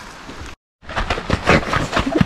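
Footsteps of hikers on a dirt forest trail, a quick run of short irregular steps and scuffs, following a brief dead-silent gap near the middle where the recording is cut.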